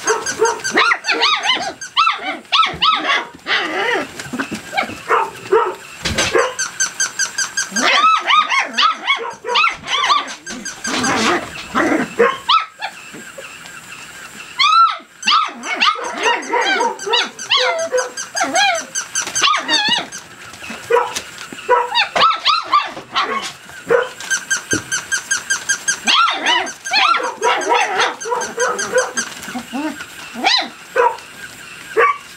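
A litter of 33-day-old rough collie puppies barking in high, squeaky voices, several at once and in rapid flurries with a short lull about halfway. This is the pups' first alarm barking, set off by an unfamiliar moving toy dog.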